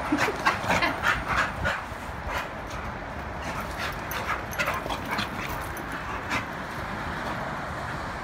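Two dogs play-wrestling, giving short yips and barks in a quick run over the first two seconds and scattered ones through the middle, over a steady background hiss. A person laughs near the start.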